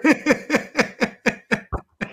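Men laughing: a run of short, quick 'ha' pulses, about four a second, that fades out near the end.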